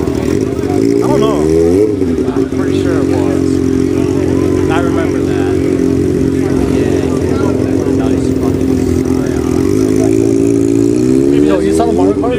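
A hatchback car's engine running close by as the car rolls slowly past. Its pitch rises in a short rev about a second and a half in and again near the end.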